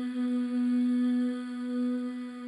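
A single sustained musical note, held at one steady pitch with a full set of overtones, beginning to fade near the end.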